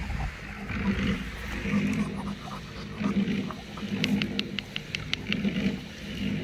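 Shar-pei puppy growling in repeated short pulses while mouthing a plush toy. A quick run of high squeaks comes about four seconds in.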